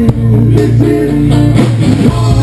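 Power-pop band playing loudly live: electric guitars and bass guitar over a drum kit, mid-song.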